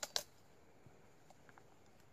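Two quick, sharp knocks of a machete blade striking into a Nacional cacao pod held in the hand, followed by near quiet with a few faint ticks as the pod is worked open.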